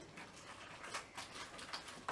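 Faint crinkling and rustling of plastic and foil toy packaging being handled and torn open, a quick run of small crackles.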